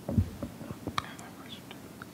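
A lull between speakers: faint whispered or murmured voices over room tone, with a soft low thump just after the start and a sharp click about a second in.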